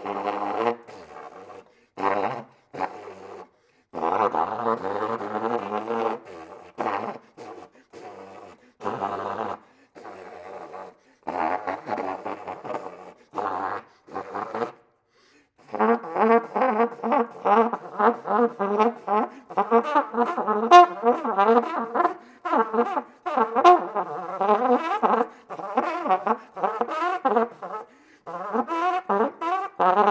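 Solo flugelhorn playing contemporary concert music: short, separated phrases with silences between them for the first half, then, after a brief pause about halfway, a dense run of rapid, wavering notes.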